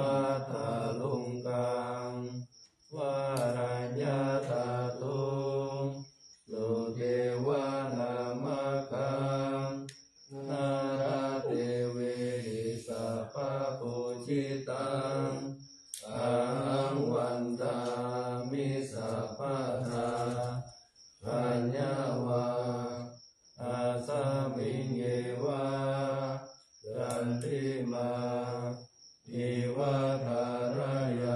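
Buddhist morning chanting in Pali by low male voices, in phrases of two to five seconds, each followed by a brief pause for breath.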